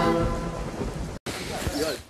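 Rain and thunder sound effect from a show's intro, with the tail of the sung theme music fading out over it in the first second. The sound cuts out briefly just after a second in.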